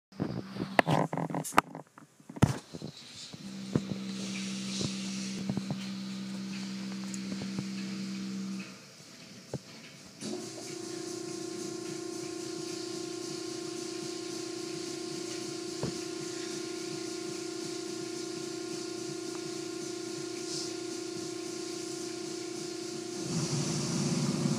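Automatic car wash machinery heard from inside the car: a motor hums a steady tone, cuts out about eight and a half seconds in, and a higher-pitched hum starts about ten seconds in, over water spray hissing on the car. A few sharp knocks sound in the first couple of seconds.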